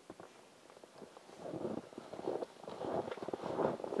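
Irregular rustling and scuffing, faint about a second in and growing louder toward the end.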